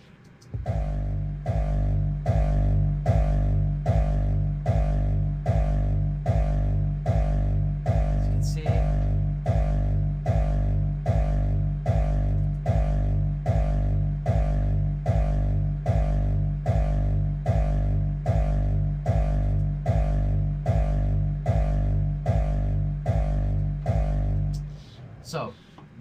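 Heavily distorted hardstyle kick drum looping on its own in a steady beat of about two and a half kicks a second, each with a crunchy, pitched low tail. The sound has been distorted several times and split through a home-made three-band chain. The loop stops about a second before the end.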